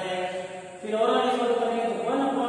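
A voice chanting in long held notes, getting louder a little under a second in.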